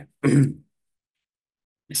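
A man briefly clears his throat once, then a pause before he speaks again near the end.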